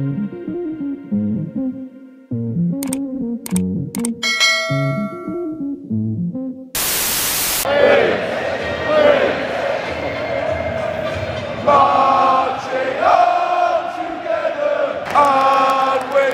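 Electronic intro music with a heavy beat for the first several seconds, cut off by a short burst of static hiss. Then a large stadium crowd of football fans singing a chant together.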